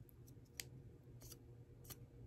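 Near silence broken by three faint clicks of chopsticks against a metal spoon as rice is picked through for small bones.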